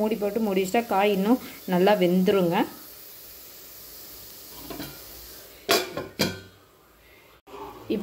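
Speech for the first few seconds, then a faint sizzle of diced beetroot frying in the pan, and two sharp metal clanks about half a second apart, from cookware being handled.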